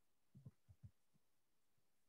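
Near silence, with a few faint, short, low thumps in the first second.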